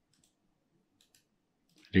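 Faint computer mouse clicks, two quick pairs about a second apart.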